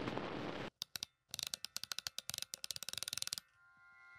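Static-like hiss that cuts off abruptly under a second in, followed by a run of rapid sharp clicks, about ten a second, for about two seconds: glitch sound effects on a film soundtrack.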